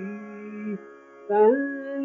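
A man singing a Carnatic kriti in raga Kedaragowla: a held note that breaks off just under a second in, then after a short pause the voice comes back on a higher note.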